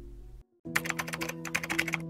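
Computer-keyboard typing sound effect: a quick run of clicks, about ten a second, starting just over half a second in after a brief cut to silence, over soft background music with held tones.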